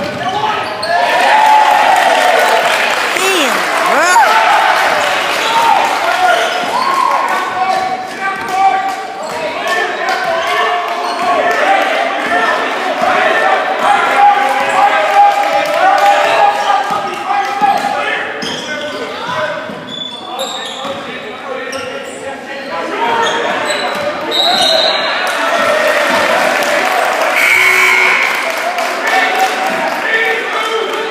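Basketball game in a large gym: the ball being dribbled on the hardwood court, sneakers squeaking and spectators talking and shouting, echoing in the hall.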